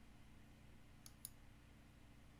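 Two sharp computer-mouse button clicks about a fifth of a second apart, a double-click, over a faint steady low hum.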